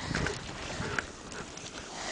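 A horse stepping through deep snow close by, hooves crunching, with a few soft knocks.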